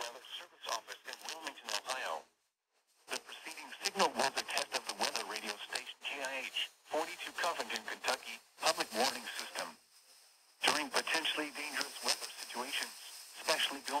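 National Weather Service weather radio voice reading the weekly test message, received over FM radio with heavy static crackling through it. The voice pauses briefly after about two seconds and again near ten seconds.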